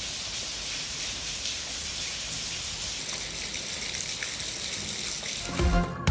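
Steady rain falling and pattering, an even hiss. About five and a half seconds in, news music starts with a louder low hit.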